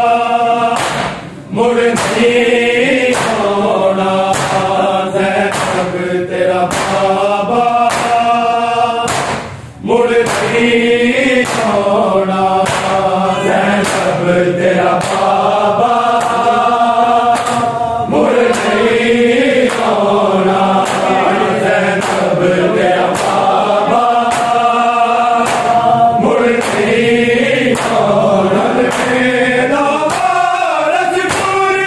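A chorus of men chanting a noha, a Shia lament, in long sung phrases over a steady beat of bare-handed matam, slaps on their chests. The singing breaks off briefly twice, about a second and a half in and again near ten seconds.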